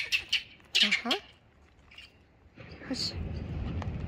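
A short high chirping sound at the start, then a steady rustling noise from about two and a half seconds in as the camera is carried along.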